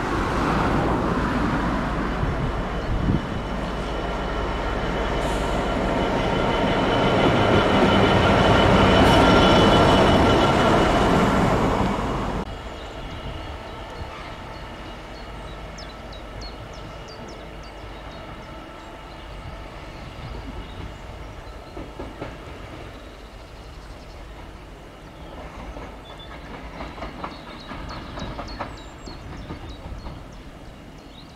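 Class 66 diesel-electric locomotive (EMD two-stroke V12) running past on the line, engine rumble and whine with wheel noise building to a peak about nine seconds in and cutting off abruptly a few seconds later. After that comes a much quieter sound of a distant train moving through the yard, with light clicks of wheels over rail joints and points.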